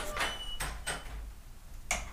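A few light knocks and clicks over a low steady hum.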